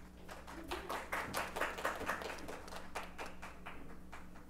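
Audience applauding, with the separate hand claps distinct.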